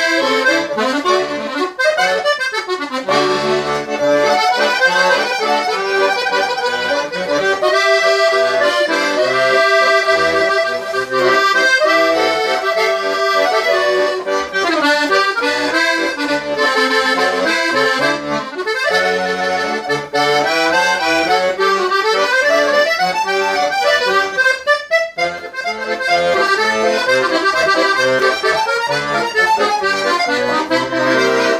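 Hohner Verdi II M 96-bass piano accordion being played: a continuous right-hand melody over low left-hand bass notes.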